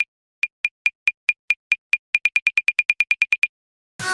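Electronic beeps of a loading-counter sound effect: short high beeps at about five a second that speed up to about ten a second around the middle, stopping shortly before the end.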